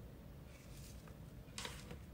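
Quiet room tone, with a short soft rustle near the end as a paper sachet of flan powder is set down on a plastic tray.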